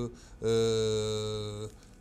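A man's voice holding one long steady vowel for about a second, a hesitation sound like a drawn-out 'ēē' between spoken phrases.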